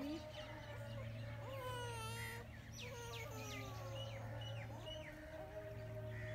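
Birds calling and chirping in a scattered chorus of short whistled notes and sweeps, over a steady low hum.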